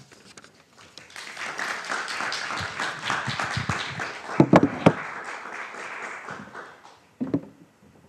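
A small audience applauding, the clapping building after a second and dying away about a second before the end, with a few sharp knocks, the loudest about halfway through.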